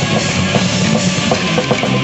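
Instrumental rock band playing live: electric guitars, bass and a drum kit, loud and continuous.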